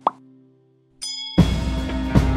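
A short, upward-gliding 'plop' sound effect right at the start, over the fading tail of a sustained guitar chord. About a second in a high chime sounds, followed by the loud start of a music intro with a heavy low end and a steady beat.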